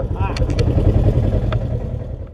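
Side-by-side UTV engine idling with a steady, low pulsing rumble and a few light clicks. It fades out near the end.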